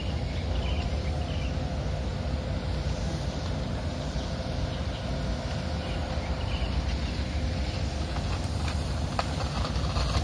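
Outdoor city waterfront ambience: a steady low rumble with a faint steady hum running through it, and a few light clicks near the end.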